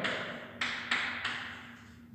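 Chalk tapping on a chalkboard as a sum is written, about four short taps in the first second and a half.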